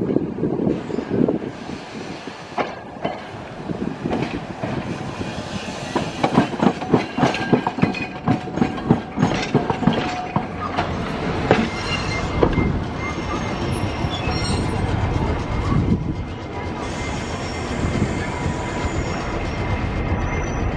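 Vintage Montreal streetcar rolling past, its steel wheels clattering over rail joints and a switch in a quick run of clicks. About halfway through, a steady high wheel squeal starts on the curve and keeps on.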